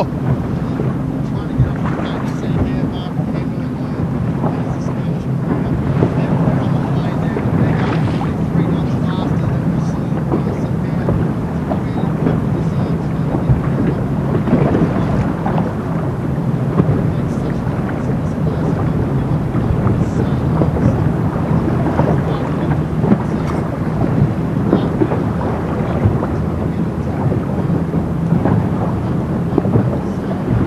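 Steady rumbling rush of wind buffeting the microphone and water, with a low drone underneath, heard from a boat at water level.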